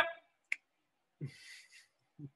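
The tail of a spoken word, then a single sharp click, then a short, soft breathy voice sound.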